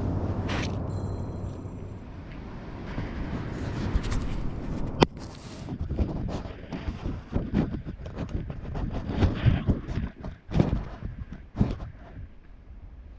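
Irregular scraping and knocking of a hand-held camera being moved about on beach sand, starting with a sharp click about five seconds in, after a few seconds of steady outdoor noise.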